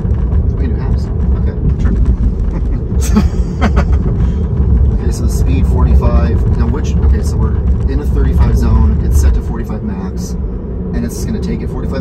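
Steady low road and tyre rumble inside the cabin of a 2018 Tesla Model 3 electric car driving along a multi-lane road. It drops somewhat about nine seconds in.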